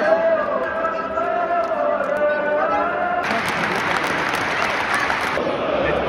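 Stadium crowd of football supporters singing a chant together in long, gliding notes. About three seconds in, it switches abruptly to a loud wash of applause and cheering, which cuts off suddenly about two seconds later.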